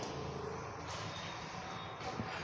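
Steady background noise: a low hiss with a faint low hum and no distinct event.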